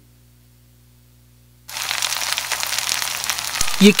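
Sausages sizzling in a cast-iron skillet: a dense crackle of spitting fat that cuts in suddenly a little under halfway through. Before it, the faint tail of a held music chord fades away.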